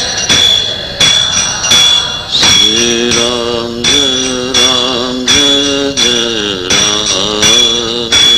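Devotional singing: a single voice begins a sung line about two and a half seconds in, over small hand cymbals struck in a steady beat a little under one and a half times a second, their ringing carrying between strokes.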